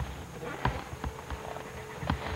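Low rumble of a car's interior, with a few scattered knocks and clicks and a faint steady hum in the second half.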